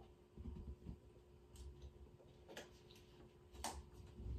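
Faint sounds of drinking from a plastic water bottle: a few soft gulps and light clicks of the plastic, spaced about a second apart.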